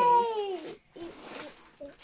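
Domestic cat meowing once: a drawn-out call of under a second that falls slightly in pitch.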